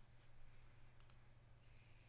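Near silence: room tone with a faint low hum and a single faint click about a second in.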